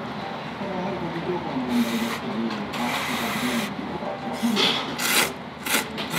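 Ramen noodles being slurped, about five separate slurps, the longest about a second long near the middle, over a steady background of restaurant chatter.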